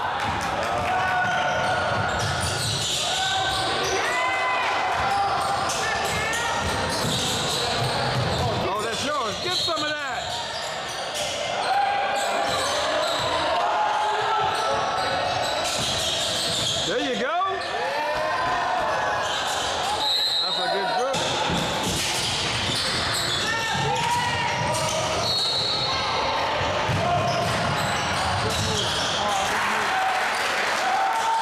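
Live basketball game sound in a large gym: a ball dribbled on the hardwood court, sneakers squeaking in short sliding chirps, and voices calling out across the hall, all with a roomy echo.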